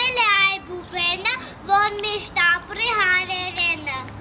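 A young girl singing solo, a run of short phrases with held notes, her voice stopping near the end.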